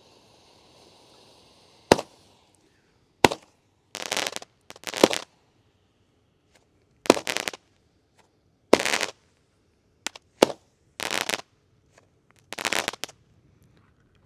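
Blue Stars consumer fountain-aerial firework: a faint fountain hiss, then about ten sharp pops and short bursts as its small aerial effects go off overhead one after another. The breaks are quiet, with no big booms.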